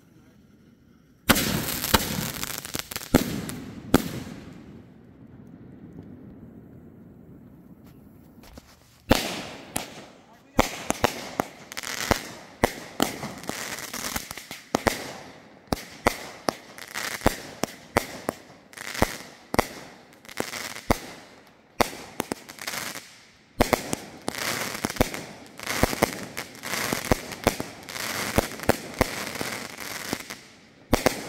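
Aerial fireworks going off. A first volley of bangs and crackling comes about a second in, then a lull of a few seconds. From about nine seconds in there is a fast run of bangs, roughly one to two a second, with crackling between them.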